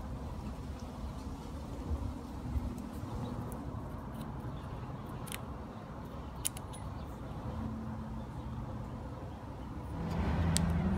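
Steady low background rumble with a few faint small clicks as plastic and rubber parts of a water pressure regulator cartridge are handled and pressed together.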